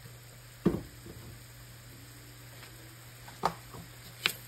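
Coconut curry sauce simmering faintly in a frying pan over a steady low hum, broken by two sharp knocks: a loud one just under a second in and a softer one near the end.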